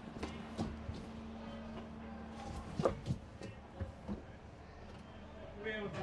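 Scattered sharp knocks and clanks over a steady low hum, heard from inside a small car's cabin on a ferry's vehicle deck. The hum drops out about two-thirds of the way through.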